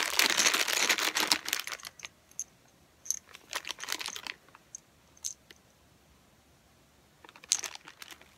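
Clear plastic zip bags of acrylic beads crinkling as they are handled. The crinkling is dense for the first two seconds, then comes in short scattered bursts with a few light clicks. There is a pause before one more crinkle near the end.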